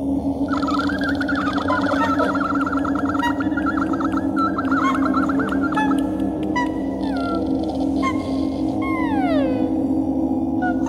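Layered female voice using extended vocal techniques: a held low drone under rapid warbling trills for most of the first six seconds, then short high calls and a long falling glide near the end, all sounding animal-like.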